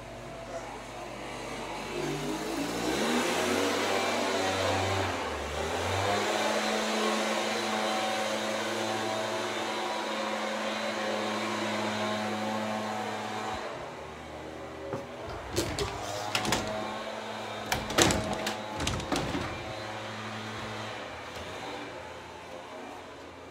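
A motor-like hum rises in pitch over a few seconds, then holds steady. A run of sharp knocks and clatter comes near the end.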